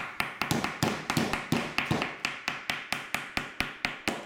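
Rock-hard stale French bread loaf being rapped, a fast, even run of sharp knocks about five a second; the loaf is so dried out it knocks like a solid object.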